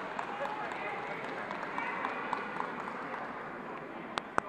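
Background chatter of many people talking at once in a large sports hall, with a few light clicks.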